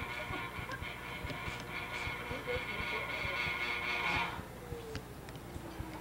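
Electric potter's wheel motor whining steadily while it turns a large, heavy mass of clay. It cuts off about four seconds in and winds down in a falling tone.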